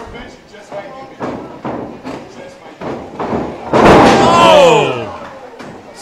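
Wrestlers landing on a wrestling ring's canvas, a loud slam about four seconds in as a single-leg dropkick lands, with lighter knocks before it. A loud shouted vocal reaction follows the slam.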